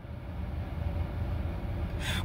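Low, steady rumble and hiss of car cabin noise, fading in at the start and then holding steady.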